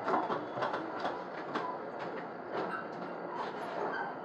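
Scattered light knocks and clicks of movement around a dining table laid with plates and plastic cups, over a steady background hiss.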